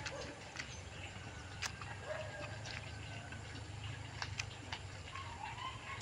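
Quiet chewing of a crisp unripe native mango: a few scattered crunchy clicks with pauses between them. Faint short animal calls sound in the background.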